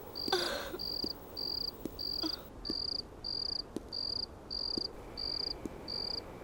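Crickets chirping in an even rhythm, short high chirps about two a second.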